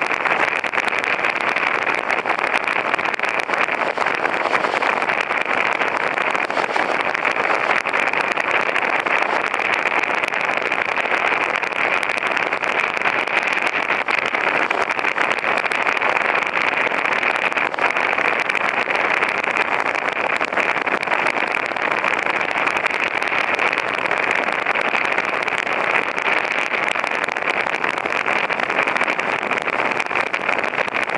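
Steady, loud noise of a vehicle travelling on a dirt track: tyres on dirt with wind. It stays even, with no distinct hoofbeats or pitched engine note standing out.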